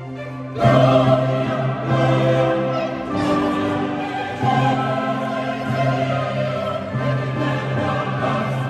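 A choir and orchestra performing sacred music. The full ensemble comes in loudly about half a second in, after a soft passage, and holds sustained chords over a steady bass note.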